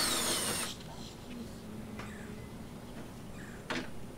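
A handheld power tool, such as a cordless drill or driver, run in a short burst while working on the car's front end, its motor whine falling as it winds down. After that come only light clicks and a brief knock near the end.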